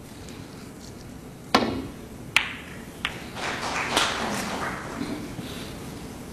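Snooker cue tip striking the cue ball with a sharp click, then a sharper click of the cue ball hitting an object ball under a second later and a fainter knock after it. A couple of seconds of soft noise follow.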